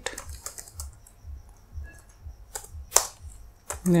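Computer keyboard being typed on, a run of irregular keystroke clicks.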